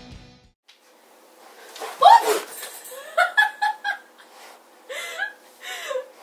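Background music stops just after the start; then a series of short, high-pitched vocal sounds with gliding pitch, with a quick run of them about three seconds in.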